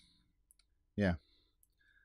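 A man's voice saying "yeah" once, about a second in, with a few faint, short clicks in the quiet around it.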